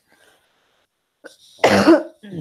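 A woman coughs once near the end, a sudden burst after a near-silent pause.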